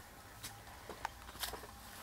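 Faint scrapes and soft taps of a long-handled shovel digging loose compost out of a raised bed and tipping it into plastic buckets, a few short strokes about half a second apart.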